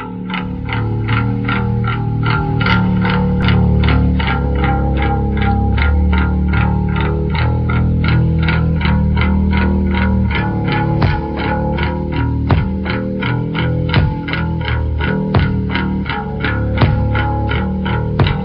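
Instrumental intro of a late-1980s heavy metal demo song: distorted electric guitar pulsing about three times a second over sustained bass guitar notes. Sharper hits join about eleven seconds in. The recording is dull, with little top end.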